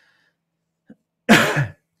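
A man clearing his throat twice in quick succession, a short rough burst starting about a second and a half in.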